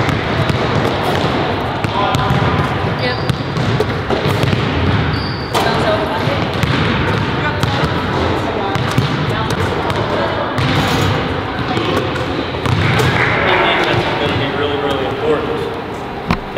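Several basketballs bouncing on a hardwood gym floor during shooting warm-ups, with players' voices mixed in and echoing around the gym.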